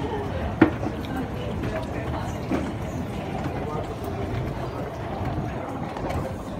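Indistinct background voices over steady room noise, with one sharp click about half a second in.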